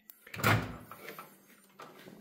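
Microwave oven door being opened: a light latch click, then a clunk as the door swings open.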